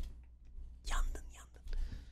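A man's faint whispering: two brief breathy sounds, about a second in and near the end.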